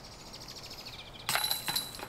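A disc golf putt hitting the basket's metal chains about a second and a quarter in, a brief metallic jingle, with faint birdsong before it.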